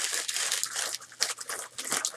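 Paper or plastic mail packaging crinkling and tearing as it is opened by hand, a dense run of small crackles.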